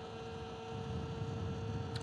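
A Talaria X3 electric bike's motor and drivetrain humming in one steady tone while cruising, over faint road and wind noise; the tone drops away near the end.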